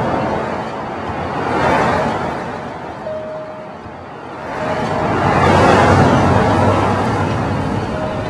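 City street traffic: cars passing in three swells that rise and fade, the loudest about six seconds in, with two brief faint tones between them.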